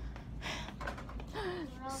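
A girl draws a quick audible breath, then her voice starts in with a drawn-out, falling tone, over a low steady hum.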